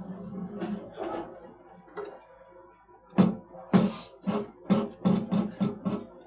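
Kangaroo lace being pulled in quick strokes over the roller of a lace skiver, its blade shaving the leather thinner. In the second half there is a rapid run of sharp scraping strokes, about two or three a second.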